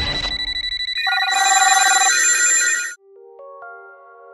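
A low rumbling whoosh dies away, then a rapid trilling electronic ring sounds for about two seconds and cuts off suddenly, followed by soft synth notes.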